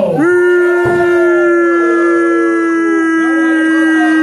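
A man's voice holding one long, drawn-out call on a single pitch for about four seconds, breaking off near the end: a ring announcer stretching out a wrestler's name.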